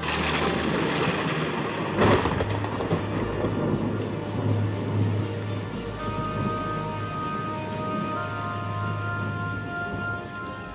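Two thunderclaps in heavy rain: the first at the very start dies away over a second or two, and a sharper, louder crack comes about two seconds in. Rain hiss and soft background music with steady held tones carry on after.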